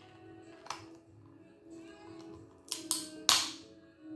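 Crab claw shell cracking as it is bitten and pried apart by hand: a few sharp cracks, the loudest a little past three seconds in. Soft background music plays under it.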